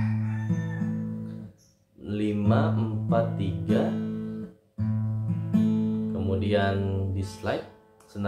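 Steel-string acoustic guitar fingerpicked, single notes plucked one after another over a held chord, in three short phrases with brief pauses between them.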